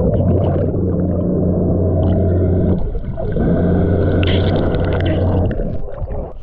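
SeaDart underwater scooter's motor heard underwater: a steady low hum with water rushing past. It dips briefly about three seconds in and cuts off just before the end as the scooter surfaces.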